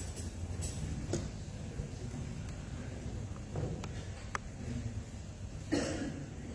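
Quiet room noise: a steady low rumble with a few scattered small clicks, and a brief louder rustle near the end.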